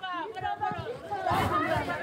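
Women arguing in raised voices, several voices overlapping, thickest about halfway through.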